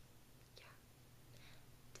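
Near silence: room tone with a faint whispered "yeah" from a woman.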